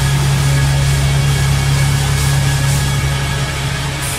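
A low, distorted note from amplified electric guitar and bass, held steadily without change.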